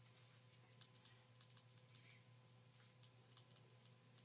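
Faint, irregular light clicks, several a second, over a steady low electrical hum.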